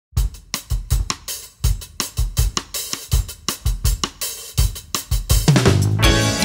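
Song intro on a solo drum kit: kick drum, snare and hi-hat play a steady beat. Bass and other instruments come in just before the end.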